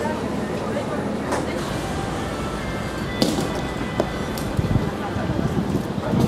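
Indistinct chatter of people with music playing in the background, and a sharp knock about three seconds in.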